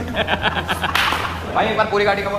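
Several men shouting and laughing in excited shock, with a short, sharp swishing crack about a second in.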